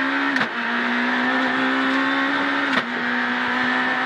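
Renault Clio R3 rally car's naturally aspirated 2.0-litre four-cylinder engine, heard inside the cabin, held at high revs at full throttle. The steady engine note is briefly interrupted twice, about half a second in and near three seconds in.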